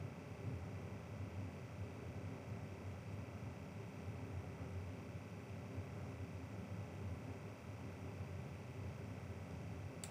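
Faint steady room tone with a low hum and no distinct events.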